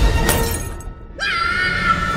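Cartoon sound effect of a small glass space helmet shattering, a short loud crash. Just past halfway, after a brief near-quiet gap, a high held squeal starts suddenly.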